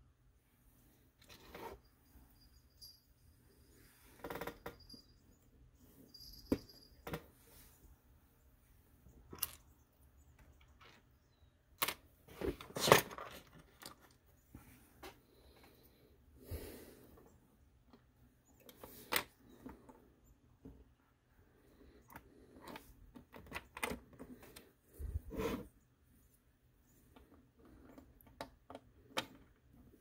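Plastic Lego pieces being handled and pressed into place: scattered small clicks and knocks with pauses between them, a cluster of louder ones about halfway through.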